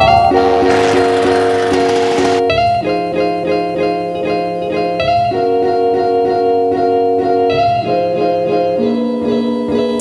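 Background music: held chords that change every two to three seconds, with a hiss-like swell over the first couple of seconds.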